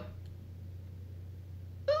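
A short pause in speech holding only a steady low hum. A woman's voice breaks in near the end with an exclaimed "ooh".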